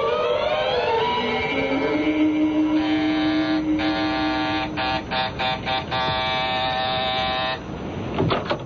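A short rising music sting, then an electric door buzzer pressed again and again: two long rings, a run of short quick buzzes, and a last long ring that cuts off near the end.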